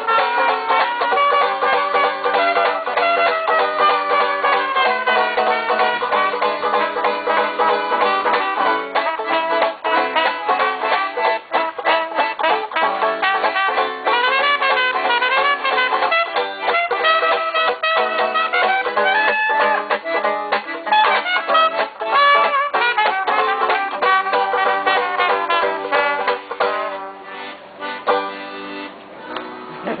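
Acoustic street jazz: a banjo keeps up a steady strum while a brass horn plays a bending, sliding melody over it. The tune thins out and gets quieter in the last few seconds, ending with a short laugh.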